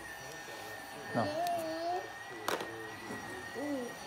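Child's toy vacuum cleaner running with a faint, steady high-pitched whine that wavers slightly, heard under short spoken words. A sharp click comes about two and a half seconds in.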